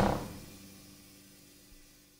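Final chord of a jazz ensemble (saxophones, trumpets, trombones and rhythm section) ringing out and dying away within the first second, leaving near silence.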